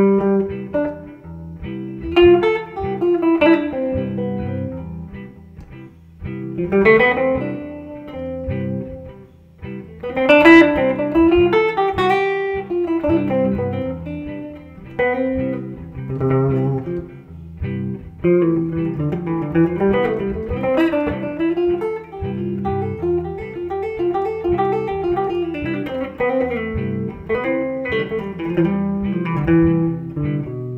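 Ibanez hollow-body archtop jazz guitar playing single-note phrases up and down the major scale with varied rhythms, over a backing track with a beat in four.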